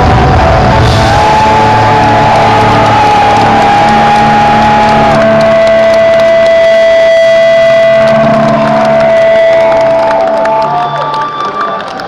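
Live rock band ending a song: loud amplified electric guitar holding long, steady notes with a few bends over drums and bass. The band drops away near the end as crowd cheering comes in.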